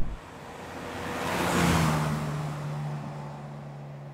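Carver One three-wheeler with its 660cc Daihatsu engine driving past. A rush of tyre and wind noise swells to a peak about a second and a half in as it passes, the engine note dropping in pitch, then a steady low engine hum fades away.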